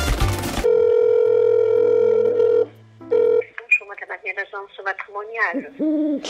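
A short burst of music, then a telephone ringing tone through a phone's speaker, one long ring of about two seconds and a brief second ring, after which a voice comes on the line.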